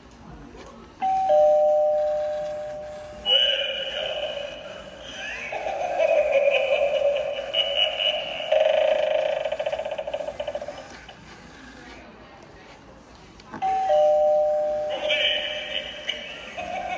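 Animated eyeball doorbell Halloween prop playing through its small speaker. About a second in, a two-note falling ding-dong chime rings, followed by several seconds of a recorded voice. The ding-dong sounds again near the end, and the voice starts over.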